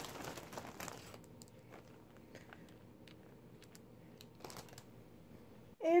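Plastic pacifiers and their plastic cases being handled and sorted: rustling and crinkling in the first second, then quieter handling with a few scattered light clicks and one more rustle about four and a half seconds in.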